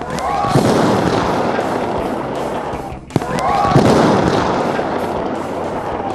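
Lightning striking a nearby tree: a sharp crack followed by a loud rolling thunder rumble over heavy rain. It is heard twice, the second crack about three seconds in.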